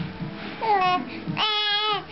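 A three-month-old baby girl cooing: a short falling coo about half a second in, then a longer, louder, high-pitched coo near the end. It is the vowel-like vocal play of an infant not yet talking.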